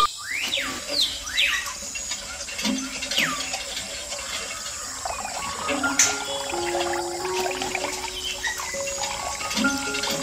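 A thin stream of water trickling from a miniature hand pump's straw spout into a small plastic toy tank, with soft background music of held notes. A few quick falling whistle-like chirps sound in the first three seconds, and there is a sharp click about six seconds in.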